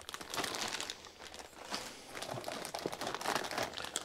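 Clear plastic bags of model-kit parts crinkling and rustling as hands lift them and pull them out of a cardboard box, a continuous uneven crackle with many small sharp clicks.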